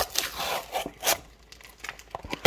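Cardboard of a torn-open trading card box scraping and tearing as its contents are pulled out, with rustling of the wrapped packs. There are a few short scrapes and rustles, the loudest at the start and about a second in.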